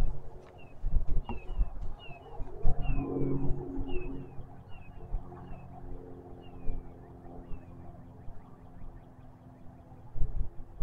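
A bird calling over and over, a string of short high chirps that slide downward, two or three a second, dying away before the end. A low rumble and faint hum run underneath.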